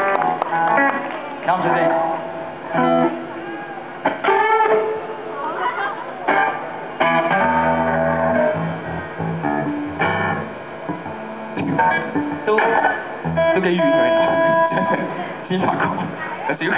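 Electric guitar and bass played loosely on stage between songs: held single notes and short phrases, not a song, with a deep bass note about halfway through.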